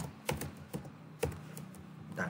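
Computer keyboard being typed: several separate keystrokes at an uneven pace, a quarter to half a second apart.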